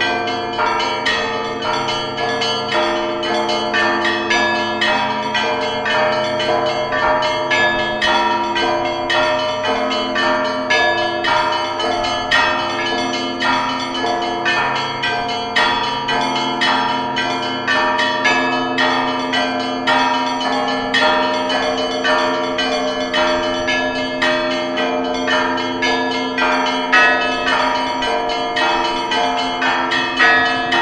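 Church bells ringing continuously in quick, overlapping strikes, several a second, their tones sustaining and blending together.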